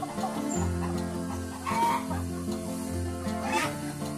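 Chickens clucking over background music with held notes and a bass line, with two louder clucking calls about halfway through and near the end.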